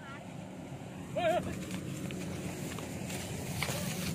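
Dry rice straw rustling as hands part and search through it, over a steady low rumble. A short voice sounds about a second in.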